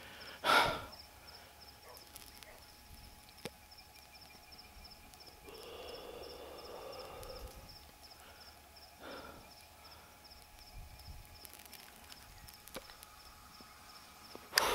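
Faint sounds of a person moving through low sugarcane at night: a short breath about half a second in, a longer soft breath or rustle around six to seven seconds, and another brief one about nine seconds in.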